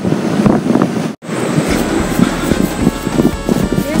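Wind noise on the microphone, cut off abruptly just after a second in, then an edited-in superpower sound effect of several steady droning tones over a low hum.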